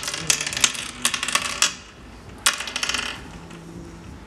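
Oware counters clicking one by one into the pits of a wooden oware board as a player sows them: a quick run of small clicks, then a second, shorter run about two and a half seconds in.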